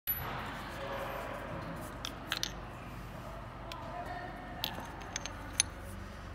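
Light metallic clicks and clinks, several scattered short ones, as the metal clamp fixture of a Cummins PT injector leak tester is handled by hand, over a background murmur of faint voices.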